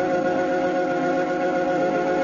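Organ music holding a steady sustained chord.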